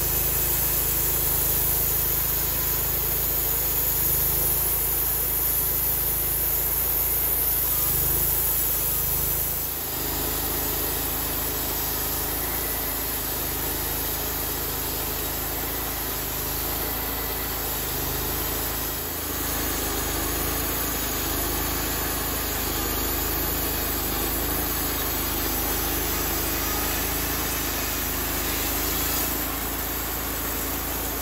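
Honda gasoline engine of a Mister Sawmill Model 26 portable bandsaw mill running steadily as the band blade cuts through hard, three-year-old red oak, with two brief dips in the sound.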